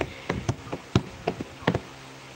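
Light, uneven taps and knocks, about eight in two seconds, from a toddler's hand slapping at the desk in front of her.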